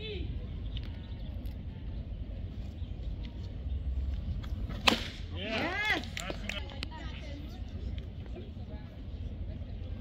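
A single sharp crack of a baseball bat striking a pitch about five seconds in, followed by a spectator's shout that rises and falls in pitch. Low outdoor rumble throughout.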